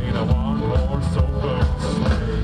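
Live band playing a rock-blues number: electric guitars and keyboard over a steady beat.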